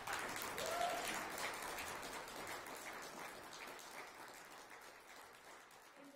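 Small audience clapping, scattered, fading out over about five seconds.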